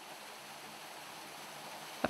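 Faint, steady outdoor background hiss, like distant running water.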